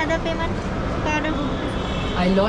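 Voices talking over a steady low background rumble.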